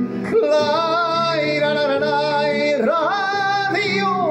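A man singing into a handheld microphone over instrumental accompaniment: one long held note with a wavering vibrato, then a quick run of pitch turns and an upward slide near the end.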